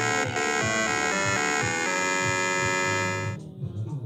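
Electronic music with bright sustained notes over a steady pulsing bass beat, cutting off about three seconds in.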